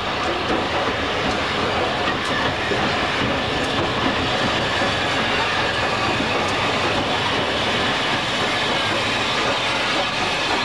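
Steam train hauled by tank engine 600 "Gordon" running past at close range: a steady mix of the engine's steam hiss and the coaches' wheels rolling over the track, with a few faint clicks from the rail joints.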